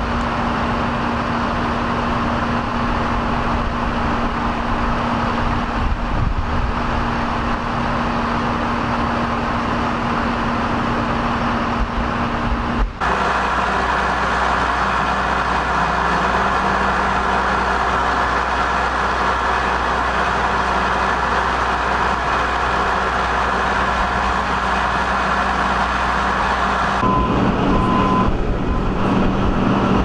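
Idling fire engines, a steady low engine hum with a rumble beneath it. About 13 seconds in the sound cuts abruptly to a different, equally steady hum, and it shifts again near the end.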